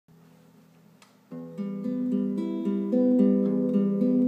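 Classical guitar starting to play about a second in: a run of picked notes changing every quarter second or so, ringing on into one another. Before it there is only faint handling noise and a soft click.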